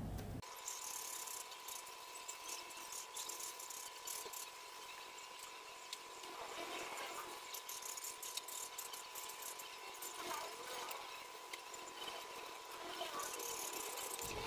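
Faint handling noise as steel curtain hooks are pushed one by one into the pleat tape of a sheer curtain: soft rustling of the fabric and light clicks of the metal hooks. A faint steady high-pitched tone runs under it.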